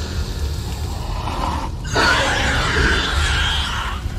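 Dramatized sound effects over a low rumbling drone: a rising hiss about a second in, then a loud harsh rush of noise about two seconds in that fades away over the next two seconds.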